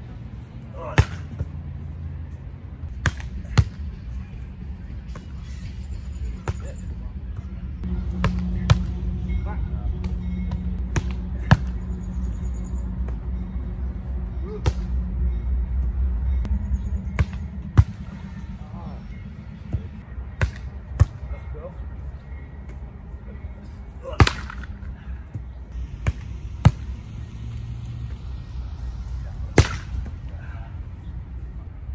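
Volleyball spiking practice: sharp slaps of a hand striking a volleyball held up on a spike trainer, and balls hitting the ground, repeated irregularly about fifteen times, sometimes two or three in quick succession.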